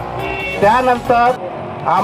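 A man speaking into a handheld microphone in short phrases with a pause in between, over steady background noise of road traffic.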